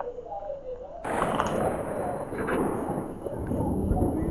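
Thunder: a sudden loud crack about a second in, going on as a rumble that grows heavier and lower toward the end.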